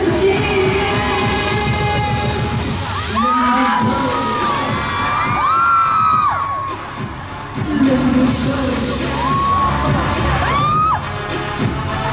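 Loud live pop music over a concert PA with a steady beat. Partway through, the beat thins out and a crowd of fans screams and cheers in high-pitched voices. The music then comes back in, with more screaming near the end.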